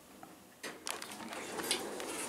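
Armor traction elevator's doors sliding open on arrival at a floor: after a near-silent moment, the door mechanism starts with a click about half a second in and runs steadily.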